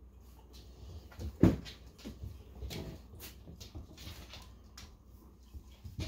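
Soft knocks and rustling close to the microphone, the loudest knock about one and a half seconds in: handling noise of a phone held against a dog's fur and a cloth hoodie.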